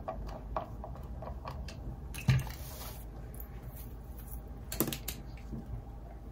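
Small clicks and taps of a screwdriver driving the screws of the back cover plate on an electric guitar body, with a louder knock about two seconds in followed by a brief rattle, and a few more clicks near the end.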